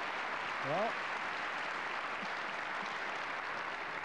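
Audience applauding at the end of a squash rally, with a man's brief word about a second in.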